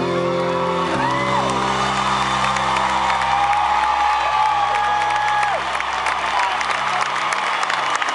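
A live country band holds out a closing chord while a large stadium crowd cheers, whoops and whistles. The band's chord changes about a second in, and a long whistle from the crowd is held through the middle.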